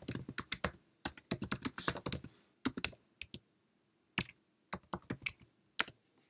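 Typing on a computer keyboard: a quick run of keystrokes for about two seconds, then a few more, a short pause, and scattered single keystrokes near the end.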